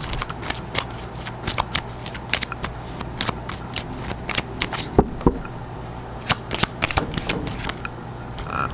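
A tarot deck being shuffled and handled by hand: a run of quick, irregular card clicks and riffles, with two sharper clicks about five seconds in.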